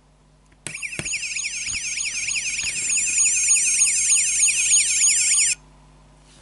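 Electronic police siren from a Majorette diecast Gendarmerie car's sound module, set off by pressing its roof light bar: a high, thin warbling yelp of about four sweeps a second. It starts under a second in and cuts off suddenly near the end.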